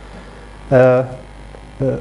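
Steady low electrical mains hum, with a man's short drawn-out hesitation sound 'eee' at a level pitch a little under a second in, and a brief voiced start just before the end.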